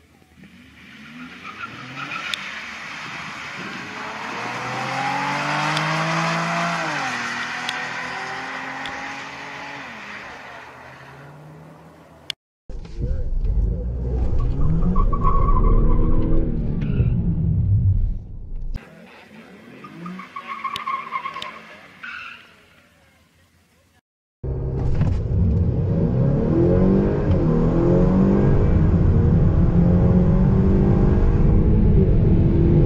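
Two cars launch down a drag strip: their engines climb through the gears and fade into the distance. After a cut, from inside a Honda Accord Sport 2.0T, its turbocharged four-cylinder engine revs up and down at the start line. Near the end it runs loud and sustained under hard acceleration.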